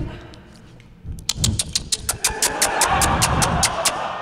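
Audience laughing after a short pause, with a run of quick, evenly spaced claps, about seven a second, starting about a second in.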